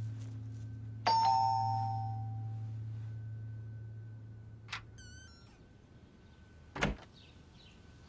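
Electronic doorbell chime rings once about a second in, a bright note that dies away over a second or two, over a low sustained music drone that fades out. A faint click and a short chirping come near five seconds, and a thump near seven seconds.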